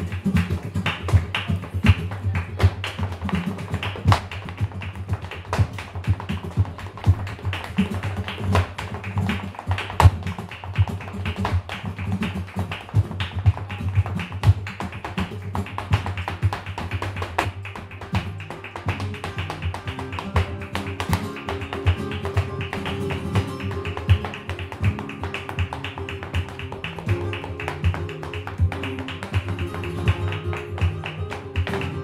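Flamenco dancer's zapateado footwork: rapid heel and toe strikes of his shoes on the wooden stage, over two flamenco guitars. In the second half the stamping thins out and the sustained guitar notes come forward.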